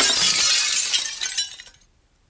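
Glass light-bulb cover shattering: a sudden crash of breaking glass that trails off and fades out shortly before the end.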